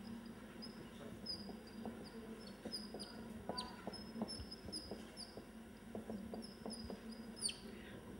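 Dry-erase marker squeaking on a whiteboard while writing: a faint run of many short, high squeaks, a few sliding downward.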